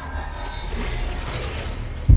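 Mechanical sound effects, a ratcheting, gear-like clicking and whirring, laid over an animation with faint background music.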